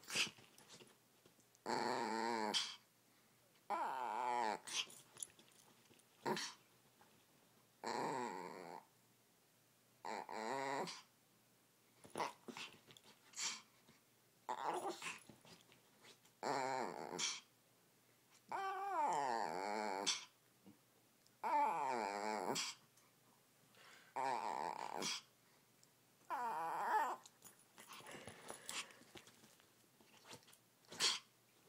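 Pomeranian vocalizing to get her ball thrown: a string of about a dozen pitched, wavering growl-whines, each up to about a second long, roughly every two seconds.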